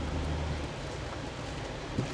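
A car running, heard as a steady even rush of noise with a low hum in the first moment.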